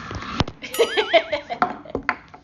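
A toddler's brief, wavering, high-pitched squeal about a second in, among several sharp knocks and clatters of a hard plastic toy against a tabletop.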